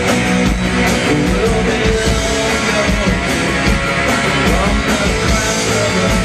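Punk rock band playing live: electric guitar, bass and drum kit, loud and steady, heard from within the club crowd.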